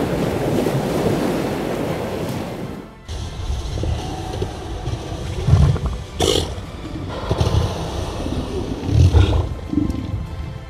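Surf washing on a beach for about three seconds, then a southern elephant seal bull roaring in repeated low bursts, loudest about halfway through and again near the end.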